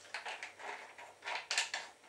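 Vinegar shaken from a bottle over a plate of chips: several short bursts of hiss, the strongest about a second and a half in.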